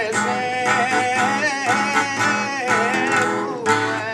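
Sardinian canto a chitarra: a male singer carrying a 'canto in re' in a high voice whose line bends and curls through ornaments, over an unamplified acoustic guitar plucking a steady accompaniment.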